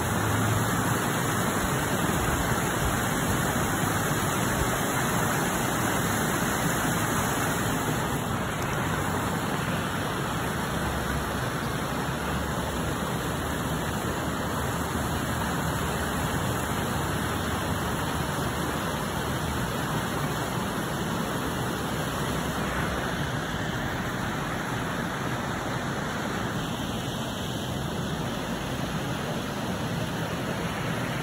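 Steady, even rushing outdoor noise with no distinct events, easing slightly after about eight seconds.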